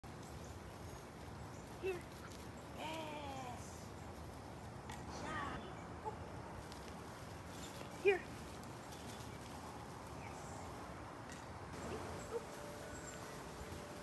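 A woman's short spoken cues to a dog, "here" and "yes", a few seconds apart, over a quiet outdoor background.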